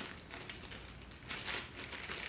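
Plastic zip-top bag crinkling as its zip seal is pressed shut with the fingers, giving a few irregular crackling clicks.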